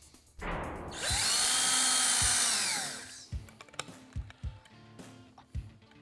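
Cordless power drill/driver running for about two seconds, its motor whine rising in pitch as it spins up and falling as it stops. Light clicks and knocks of small parts being handled follow.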